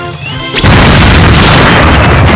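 Cartoon cannon being fired: a sudden loud boom about half a second in that carries on as a long, rushing blast.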